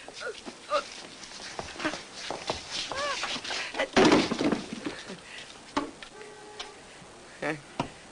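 Film soundtrack of a bar brawl: scattered short grunts and exclamations from men, with a loud, short outburst about four seconds in.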